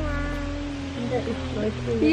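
A woman singing a children's song: a note that slides down and is held for about a second, followed by a few shorter, wavering notes.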